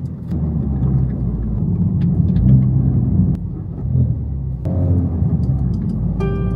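Inside the cabin of a Honda Civic Type R FL5 moving slowly in second gear: the low, steady running of its 2.0-litre turbocharged four-cylinder engine mixed with road rumble, with a few faint clicks.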